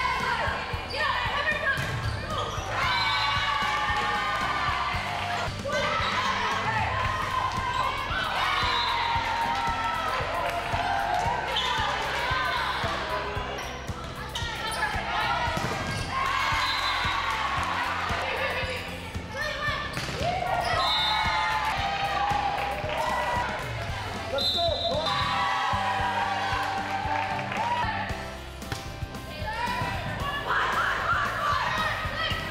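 Volleyball being played in a gymnasium: the ball struck and landing with sharp knocks, over voices shouting and calling throughout. The sound comes in bursts with short lulls between them.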